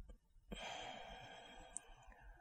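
A woman's long, slow out-breath through the mouth, starting about half a second in and gradually fading: the controlled exhale of a paced calming breathing exercise.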